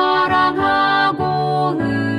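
A four-part hymn sung with the tenor part left out: soprano, alto and bass voices hold chords that change about twice a second.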